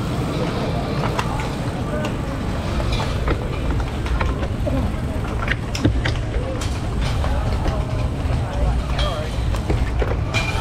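Steady low rumble of wind and road noise on a GoPro camera rolling in a slow-moving pack of road cyclists. Background voices of riders and onlookers talk over it, and scattered sharp clicks come from the bikes.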